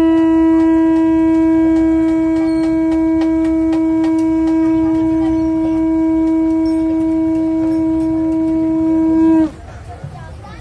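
Conch shell (shankh) blown in one long, steady note lasting about nine and a half seconds, cutting off near the end.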